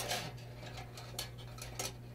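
A few light clicks and taps from a plastic roll spindle knocking against the stainless steel cabinet of an ASI 9030 dual-roll toilet tissue dispenser as it is moved by hand. The sharpest click comes right at the start, with fainter ones about a second in and near the end.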